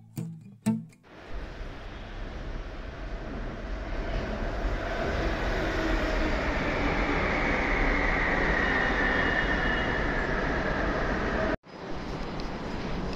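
A metro train running alongside the platform: a rumbling rail noise builds over the first few seconds and then holds steady, with a high whine that slides slightly lower in pitch. Guitar music ends about a second in, and the train sound cuts off suddenly just before the end.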